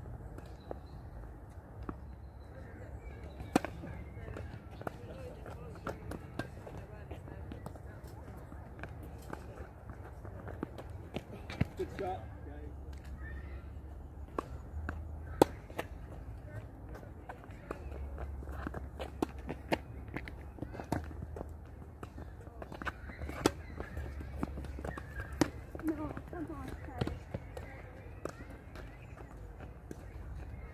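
Tennis ball being hit back and forth on a hard court: sharp pops of the ball off racquet strings and bounces every second or two, with footsteps and a steady wind rumble on the microphone.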